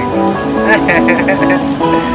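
Slot machine playing its electronic jackpot celebration music for a Major progressive win: a bright tune of held notes, with a quick high warbling run about a second in.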